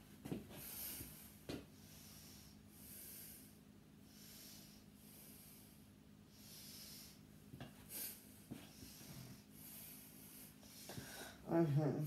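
A person breathing audibly, each breath a soft hiss coming every second or two, over a low steady hum, with a few light clicks from handling a lightsaber hilt.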